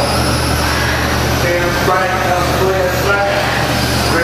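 Radio-controlled short-course trucks racing on an indoor dirt track, their electric motors running with short pitched tones that rise and fall as the trucks speed up and slow down. A steady low hum sits underneath.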